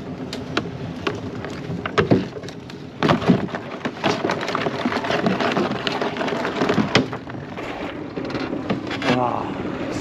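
A hauled collapsible mesh crab pot being handled over a small boat: a run of irregular clicks, knocks and rattles from its hoop frame and contents, over a steady noisy background.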